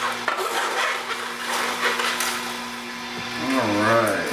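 Omega NC900HD slow masticating juicer running with a steady low motor hum while its auger crushes celery and greens, with irregular crunching and crackling.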